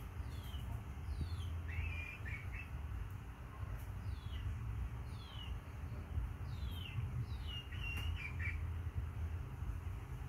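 Small birds chirping: a series of short, quick downward-sliding chirps with a couple of brief runs of clipped notes, over a steady low hum.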